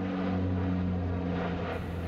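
Twin-engine turboprop airliner climbing out just after takeoff: a steady, low propeller drone.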